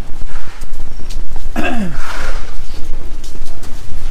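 Footsteps on a concrete floor and rumbling handling noise from a body-worn camera while walking, with many short clicks. About a second and a half in comes one short falling voice-like sound.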